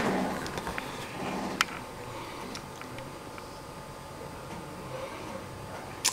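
Quiet room background with a faint steady hum and a few light clicks, the sharpest about a second and a half in.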